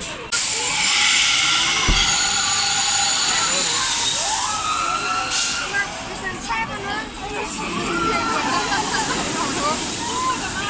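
S&S pneumatic drop tower at work: a loud rush of compressed air, with a steady whine in it, begins about a third of a second in. Through the second half, many riders are screaming.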